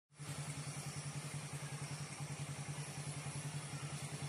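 An engine idling, a steady low hum that pulses evenly and rapidly.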